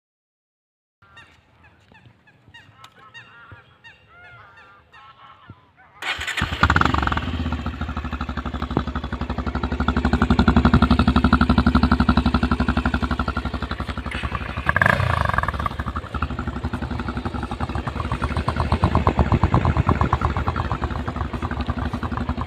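Bajaj Pulsar 150 motorcycle's single-cylinder engine running through its stock exhaust with a fast, even beat. It comes in abruptly about six seconds in, after a few seconds of faint background sound, and is revved up a few times, loudest around the middle.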